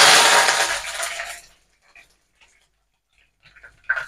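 Green chillies hitting hot oil with garlic in a kadai: a sudden loud sizzle and spatter that dies away within about a second and a half.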